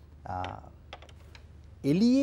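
A man speaking in a studio interview, broken by a pause of about a second and a half in which a few faint clicks sound.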